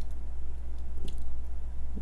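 Close-miked soft, wet chewing of avocado-and-pollock-roe rice, with a faint click about a second in, over a steady low hum.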